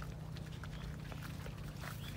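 Footsteps and leaves brushing as someone walks through dense seedlings, with scattered short soft clicks over a low steady hum.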